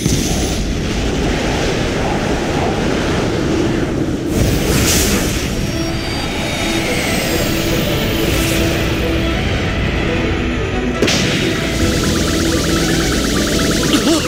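Anime sound effect of a magic wind blast: a loud, continuous rush of wind with a sharp hit about eleven seconds in, under background music.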